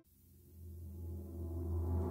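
Cinematic intro swell: a deep, low drone fades in from near silence and builds steadily louder, with a hiss starting to rise over it near the end.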